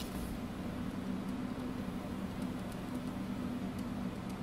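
Steady low electrical hum with a faint even hiss, the background noise of the microphone and room, with a few faint light ticks scattered through.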